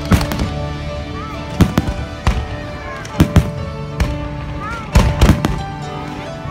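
Aerial firework shells bursting in a string of sharp bangs, about ten in all and several in quick pairs, over steady music.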